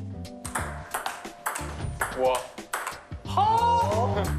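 Table tennis rally: a series of sharp, short clicks of the ball striking paddles and the table, over background music.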